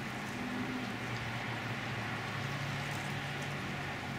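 Steady low hum with an even hiss, with no distinct event.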